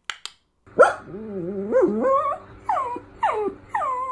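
A dog vocalizing in a run of sliding, whining calls, ending in several short falling swoops.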